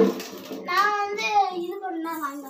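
A high-pitched voice drawing out long, wavering notes; from just under a second in, one held note slides slowly down in pitch.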